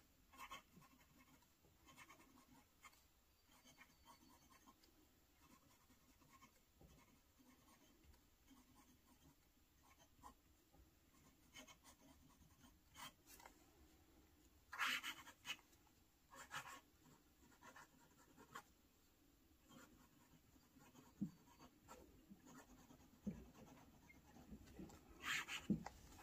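Faint scratching of a medium steel Bock fountain pen nib writing on dot-grid notebook paper, in short strokes, with now and then a brief louder stroke.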